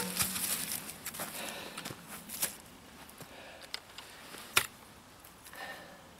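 Faint handling and movement noise: scattered small clicks and rustling, with one sharper click about four and a half seconds in. No drill motor runs.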